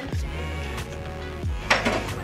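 Background music with sustained tones and a deep beat, and a short, bright clink of dishes near the end.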